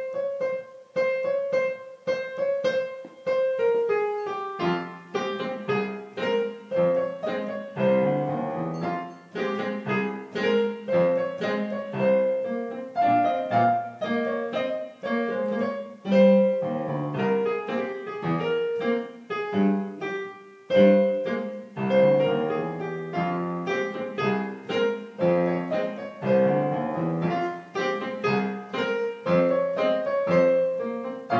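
Piano duet played four hands on a digital piano: a repeated note in one part at first, with the second part's lower notes and chords joining about four seconds in.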